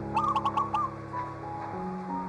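Soft, slow piano music with sustained notes, over which a bird gives a quick run of about five short calls lasting under a second near the start.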